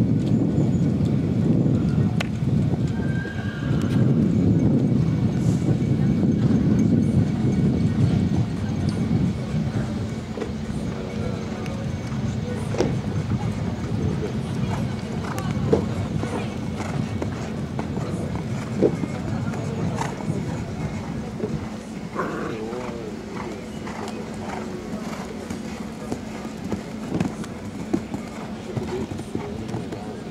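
Horse cantering on a sand arena, its soft hoofbeats under a low rumble that is loudest for the first several seconds, then an even background with a steady hum.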